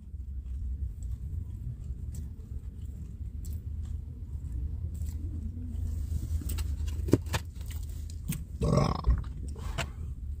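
Steady low rumble inside a parked van's cabin, with light clicks of cutlery against food containers, and a short throaty vocal sound near the end.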